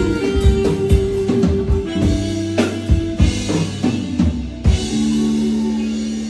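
Live band music: a drum kit beating out strokes and fills under keyboard chords, then settling about five seconds in on one long held chord as the song closes.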